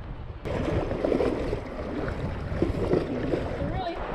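River water and wind on the microphone from an inflatable kayak moving downstream, with faint voices in the background. The noise steps up louder about half a second in.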